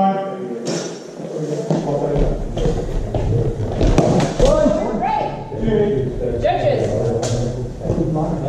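Voices talking in a sports hall, with thuds and a few sharp knocks of a longsword fencing exchange, the sharpest cluster about four seconds in.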